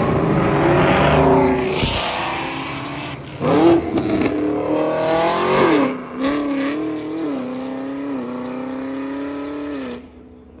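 Car engines passing on the road: one car goes by at the start, then another revs up hard with a steeply rising pitch, drops sharply at a gear change about six seconds in, and holds a steadier, slightly wavering note until the sound cuts off suddenly.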